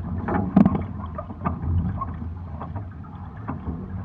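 Water rushing and splashing along the hulls of a Hobie 16 catamaran sailing in light wind, with scattered clicks and knocks, the loudest a sharp knock about half a second in.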